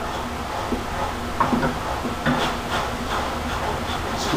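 Steady low hum of gym room noise, with a few faint, short vocal sounds from a man straining through a leg extension set.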